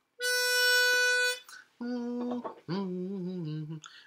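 A reed pitch pipe is blown for about a second, sounding one steady, reedy note to give the starting pitch. A voice then hums that pitch back, once briefly and then a little longer.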